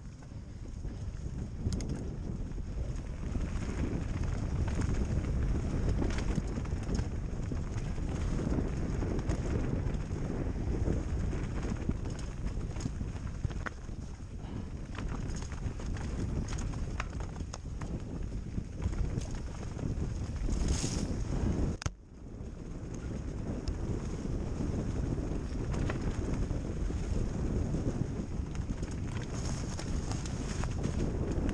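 Wind buffeting the microphone over the tyre roar and rattle of a mountain bike descending a rough dirt trail at speed, with frequent knocks from bumps. The noise breaks off for a moment about three quarters of the way through, then picks up again.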